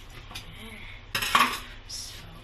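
Knife-and-fish handling in a stainless-steel kitchen sink, with one sharp metallic clatter and a brief ringing note a little past a second in.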